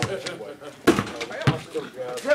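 A basketball bouncing on a paved driveway: three sharp thuds within two seconds, with voices in the background.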